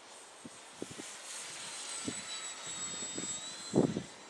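Electric brushless motor and propeller of an RC model gyrocopter flying high overhead: a thin, high whine that holds steady and rises slightly near the end. Short low buffets of wind on the microphone come through it several times, the strongest just before the end.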